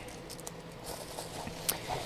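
Quiet handling of unboxing packaging: faint rustles and light taps of cardboard and plastic, with one sharper click near the end.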